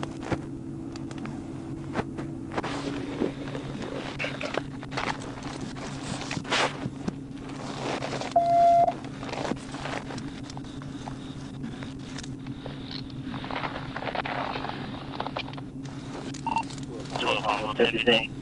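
Steady low hum of an idling police patrol car heard from its dashcam, with scattered clicks and rustles. Faint distant voices come in, louder near the end, and a short beep sounds about eight and a half seconds in.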